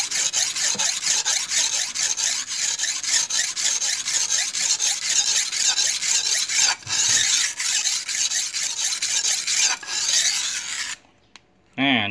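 Steel knife blade scraped rapidly back and forth on a wet Tra Phet (Diamond brand) grade A sharpening stone under full hand pressure, a gritty rasp at several strokes a second. The strokes break off briefly twice and stop about a second before the end.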